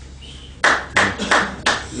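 A person clapping hands four times in a quick even rhythm, about three claps a second, starting just over half a second in.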